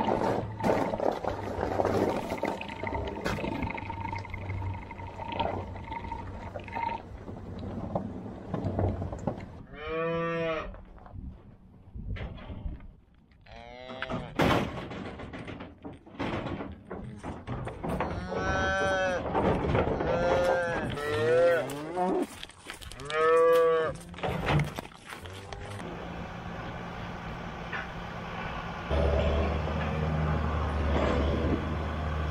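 Black Angus cows and calves mooing: drawn-out bawls, one about ten seconds in and several more between about eighteen and twenty-four seconds. For the first several seconds an engine hums steadily with rattling, and a deeper engine hum comes in near the end.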